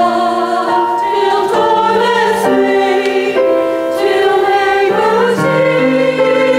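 Mixed church choir singing in parts with instrumental accompaniment, holding sustained notes that move from chord to chord about once a second.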